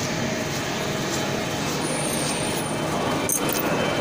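Steady mechanical noise of factory machinery running, an even hum and hiss that does not let up.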